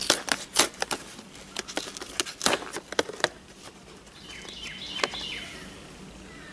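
A cardboard mailing box being pulled and torn open by hand: a quick run of sharp rips and crackles over the first three seconds or so, then the tearing stops.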